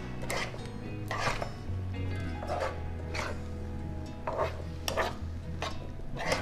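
A spoon stirring and scraping jackfruit seeds through thick sugar syrup in a non-stick pan, in repeated strokes about once a second.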